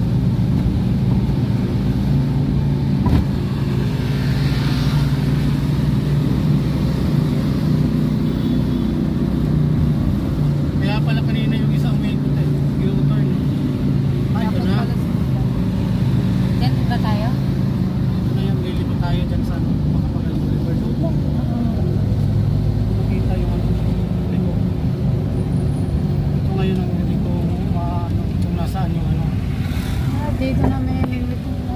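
Vehicle engine and road noise heard from inside the cabin while driving, a steady low drone throughout, with faint voices in the background.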